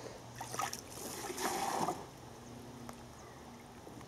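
Water splashing and trickling as a long plastic tube sampler is plunged into a pond tank and pulled back out, draining. There is a short splash about half a second in and a louder one lasting about half a second at around a second and a half. A faint steady low hum runs underneath.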